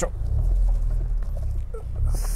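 Low rumble of the Honda Civic FK7's engine heard inside the cabin, growing louder about half a second in as the car is put in gear to move off.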